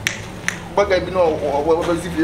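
Two sharp finger snaps about half a second apart, then a man's voice.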